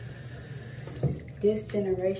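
Water running from a bathroom sink tap, with a few short splashes starting about a second in.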